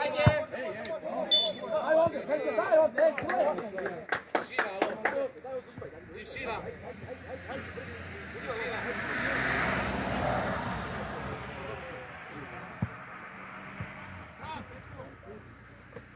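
Shouting on a football pitch with a few sharp knocks in the first seconds, then a passing vehicle whose noise swells to a peak about ten seconds in and fades away.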